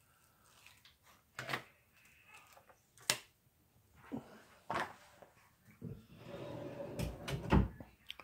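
Handling sounds: a flexible silicone sheet being lifted off and moved, with a few separate sharp clicks and taps as a small sublimated tag is set down on a marble slab. There is a longer stretch of rustling and two low thumps near the end.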